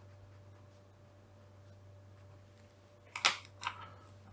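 Fineliner pen writing on paper, a faint scratching, then a few sharp clicks and taps of the pen on the sheet about three seconds in.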